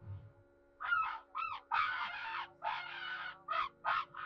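Soundtrack of an AI-generated video clip: a synthetic character voice screaming in a run of short, harsh bursts starting about a second in, over a faint steady drone.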